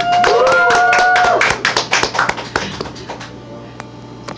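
Small audience applauding at the end of a song, with a couple of voices whooping over the first second and a half; the claps then thin out to a scattered few.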